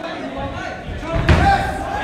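Spectators' voices shouting and talking at ringside, with one heavy thud a little past halfway as a fighter's body hits the mat.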